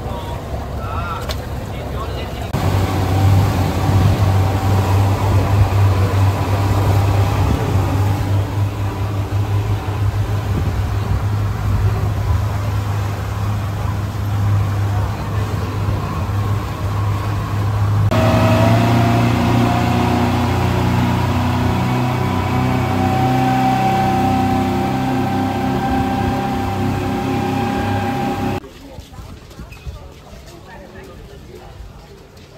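A motorboat's engine running steadily with a low hum. The sound changes abruptly twice, with a higher tone rising and then holding after the second change, and drops much quieter shortly before the end.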